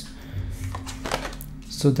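A tarot card being turned over and laid on a tabletop, a few faint soft ticks, over quiet background music with a low steady drone.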